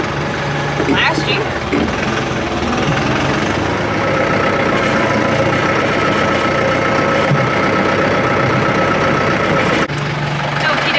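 Kubota farm tractor's diesel engine running steadily, heard from inside the cab. A steady high whine joins about four seconds in, and the sound cuts off abruptly just before the end.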